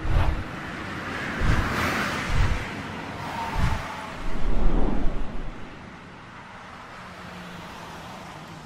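Sound effects of an animated intro sequence: four deep booms in the first few seconds under a rising and falling whoosh, then a louder low rumble, settling into a quieter steady drone for the last few seconds.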